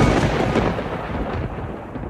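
A low rumble under a hiss of noise, with no singing or tune, fading steadily over the two seconds.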